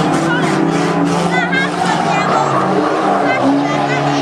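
Banger racing cars' engines running at speed around the oval track, a steady mix of several engines, with voices over them.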